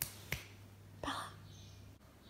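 Two sharp finger snaps about a third of a second apart, calling a pet over, then a short breathy noise about a second in.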